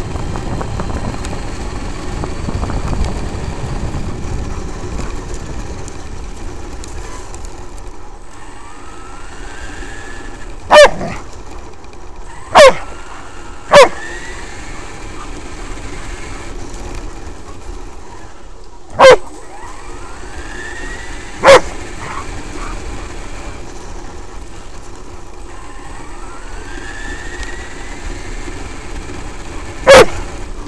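A German Shepherd barks five times, loud and close, in two groups. Under the barks runs the Traxxas X-Maxx's brushless electric drive, whining higher each time the truck speeds up, with steady tyre noise on the gravel.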